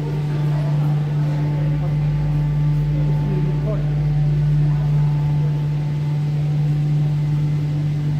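A steady low mechanical hum from the cable car station's machinery as the gondolas run through the boarding platform, with faint voices about three to four seconds in.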